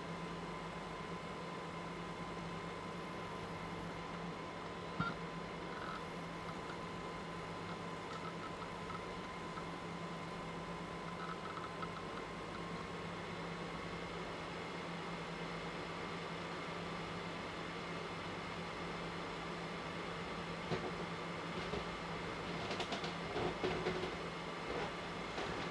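Steady electrical hum and hiss with a faint high whine that shifts slightly in pitch about halfway through, and a few faint clicks near the end.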